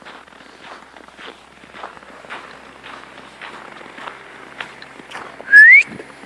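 Footsteps crunching in snow, about two a second, then near the end a short, loud rising human whistle calling the dogs.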